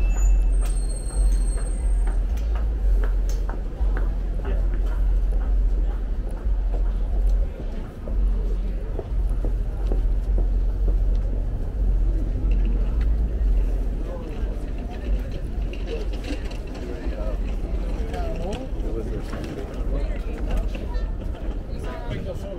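City street noise: a heavy, steady low rumble of traffic and air, with indistinct voices of people nearby that become clearer in the second half, and a few scattered clicks early on.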